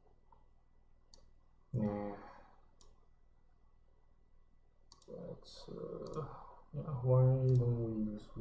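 A man's voice: a short voiced sound about two seconds in, then low, unclear speech from about five seconds on that grows louder near the end. A few faint clicks come in between.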